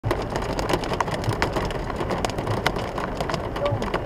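Heavy rain drumming on a car's roof and windscreen, heard from inside the cabin as many sharp taps over a steady hiss, with the car's engine running low underneath as it creeps along.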